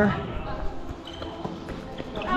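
Players' voices echoing in a large gymnasium, with a few faint thuds of a volleyball being played.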